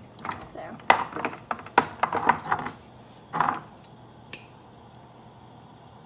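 Spice jars clicking and knocking as they are handled and set down, a quick cluster of small hard clacks over the first three and a half seconds and one more soon after.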